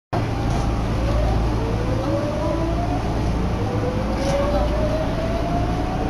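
Electric commuter train pulling away from a station, heard from inside the car: the traction motors whine in a series of rising tones as it gathers speed, over a steady low rumble.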